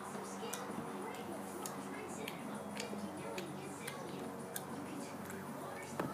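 A jelly bean being chewed close to the microphone: faint, irregular mouth clicks, about three a second.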